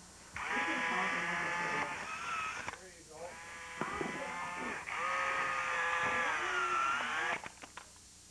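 Electronic calls from a robotic toy frog's speaker: a run of long, wavering pitched sounds, each a second or more, with short breaks between them.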